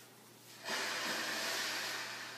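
A long, breathy hiss, like a forceful exhale, that starts abruptly under a second in and slowly fades away.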